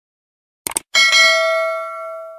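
A quick double mouse-click sound effect, then about a second in a bright notification-bell ding that rings and slowly fades.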